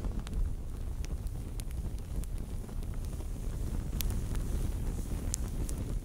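Sound effect of burning flames: a steady low rumble with scattered sharp crackles, fading away at the very end.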